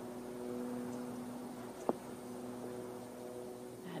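Quiet outdoor ambience: a faint steady hiss with a low, even hum, and one sharp short click about two seconds in.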